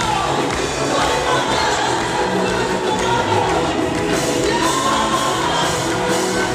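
Gospel choir singing with band accompaniment, many voices over a steady bass line, loud and continuous.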